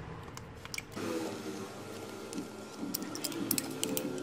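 Side cutters snipping and snapping the plastic divider ribs inside a laptop battery case: a few sharp clicks, one early and a quick cluster in the last second.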